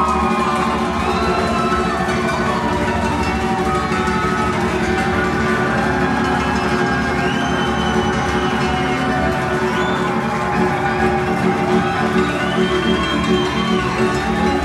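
Hungarian folk string band playing live: fiddles carry a gliding melody over a double bass and a pulsing accompaniment.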